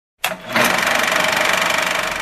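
Film-projector sound effect: a sharp start about a quarter second in, then a steady, rapid mechanical clatter with a hiss.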